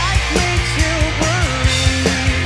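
A live rock band playing: electric guitar, bass and a steady drum beat, with a male lead vocal singing a held, wavering melody over them.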